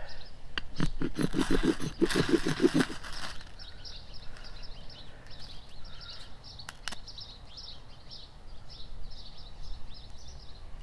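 A man laughing for about two seconds, then small birds chirping over and over in the background, with one sharp click about seven seconds in.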